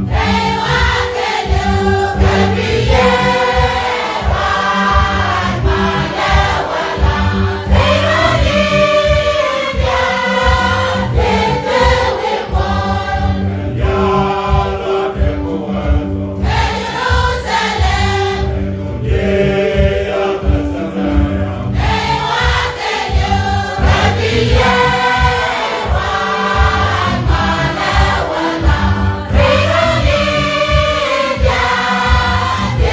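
Choir singing a hymn in Nuer, over keyboard accompaniment with sustained chords and a steady low beat.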